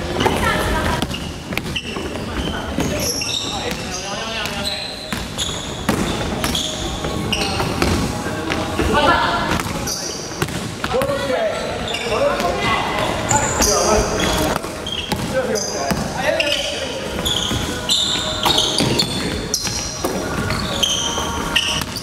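Basketball game on a hardwood gym floor: the ball bouncing and thudding repeatedly, sneakers squeaking in short high bursts, and players calling out to each other.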